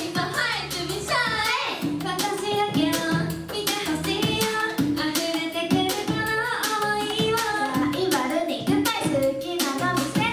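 A J-pop/K-pop-style idol dance-pop song played as a backing track with a steady beat, with young girls' voices singing along into handheld microphones.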